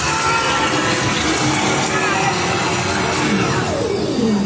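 Loud, dense mix of haunted-house sound effects and voices, with a pitched sound gliding down near the end.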